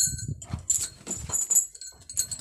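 Metal tether chains on water buffaloes jangling in short bursts as the animals shift about, with low scuffling of hooves on the dirt-and-straw floor.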